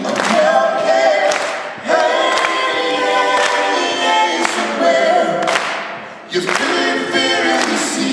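Live folk-rock music: many voices singing a melody together over a steady clapping beat, with short breaks between phrases.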